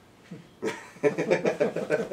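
A person laughing: a short burst about a third of a second in, then a run of quick, rhythmic laughs that grows louder toward the end.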